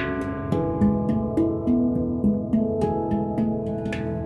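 Duet of an Ayasa handpan and a Cristal Baschet: the handpan's struck steel notes step through a quick melodic run, about three to four notes a second, over the long, sustained glassy tones of the Cristal Baschet.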